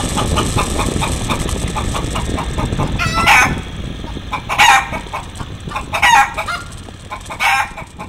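Chicken clucking in quick short runs, then loud squawks about every second and a half, over a low rumble that fades away in the second half.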